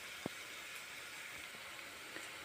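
Shredded cabbage and onion frying in oil in a pan, a faint, steady sizzle, with one small click near the start.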